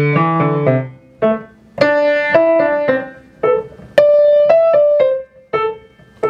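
Grand piano playing short phrases of single notes from an etude, with brief pauses between phrases. A few notes, the hardest about two and four seconds in, are struck louder as accents, each lifting the phrase a dynamic level.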